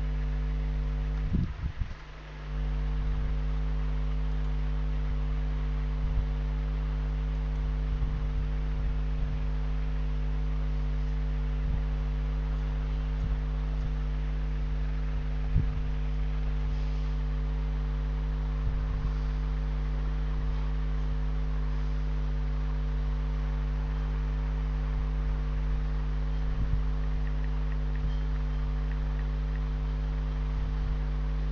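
Steady electrical hum from the recording setup, made of several fixed low tones, with faint scattered clicks over it. The hum dips briefly about two seconds in.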